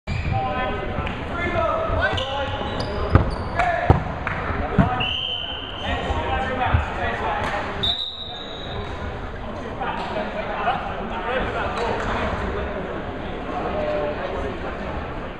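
Players shouting and calling out in a sports hall during a dodgeball game, with several sharp smacks of dodgeballs bouncing and hitting in the first seven seconds.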